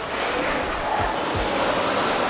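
Steady rushing noise of a busy covered market hall, with a couple of soft low thumps about halfway through.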